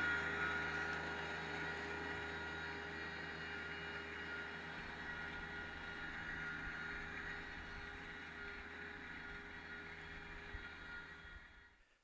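Rural King RK24 compact tractor's diesel engine running steadily as it pulls a pine straw rake, slowly fading as the tractor moves away, and dropping out just before the end.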